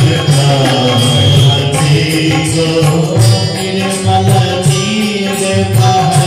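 Devotional Hindu bhajan music: a sung melody carried over a steady percussion beat.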